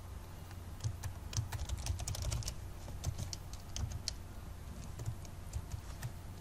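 Typing on a computer keyboard: irregular key clicks starting about a second in, over a low steady hum.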